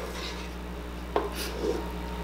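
A spoon clinking and scraping against a stainless-steel mixing bowl while cake batter is scooped out: one sharp click about a second in and a short scrape just after, over a steady low hum.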